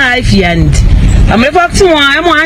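A woman's voice speaking loudly and heatedly, with a short break about halfway through, over a steady low rumble.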